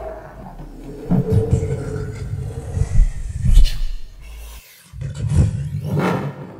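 A low rumbling sound effect with a growl-like wavering tone over it. It is loudest about three and a half seconds in, breaks off briefly near five seconds, then swells again.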